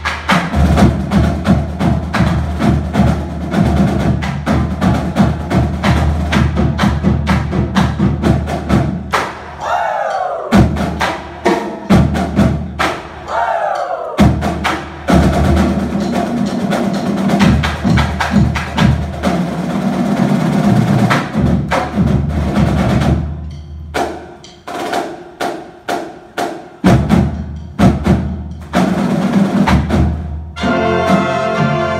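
High school concert band playing a lively Christmas piece, with busy percussion strokes over brass and winds. Twice a high note glides downward, and near the end the music thins to separate percussive hits before the full band comes back in.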